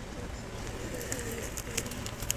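Domestic pigeons cooing softly, with a few light clicks.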